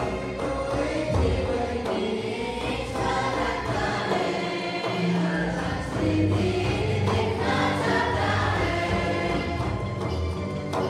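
A group of young women singing a Hindi Christian hymn together from song sheets, one voice amplified by a microphone, with steady low notes sounding beneath the melody.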